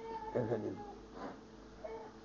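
A faint, brief voiced sound, a short murmur about half a second in, with a couple of fainter short sounds later, over quiet room hum.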